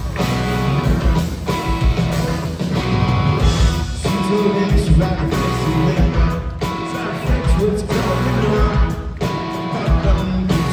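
Live rock band playing a song loudly: electric guitars, bass and drums, with a regular kick-drum beat under the guitars, recorded from the audience.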